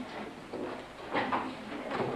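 Room noise with a brief, indistinct voice a little over a second in.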